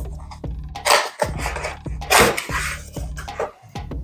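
Cardboard box being opened by hand, with a couple of short scraping rustles of cardboard about one and two seconds in, over background music.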